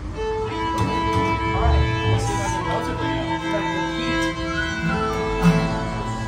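Acoustic string band striking up a reel: fiddle leading with held and running notes over acoustic guitar and upright bass.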